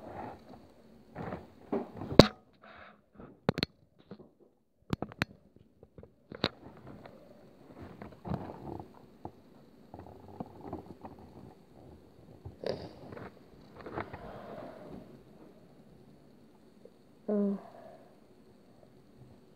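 Quiet handling of a trading card: a few sharp clicks and taps, the loudest about two seconds in, with soft rustling from the fingers between them.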